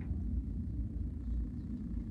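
A steady low rumble of room background noise, with no clear marker or other event standing out.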